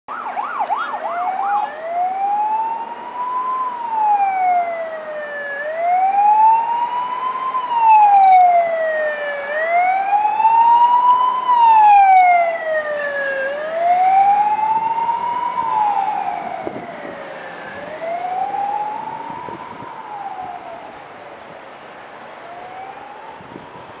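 Ambulance siren: a fast yelp for the first second and a half, then a slow wail rising and falling about every four seconds. It grows louder as the ambulance passes and fades away in the last several seconds.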